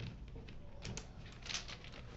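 Small rune stones clicking against each other inside a cloth pouch as a hand rummages through them: a few faint, light clicks.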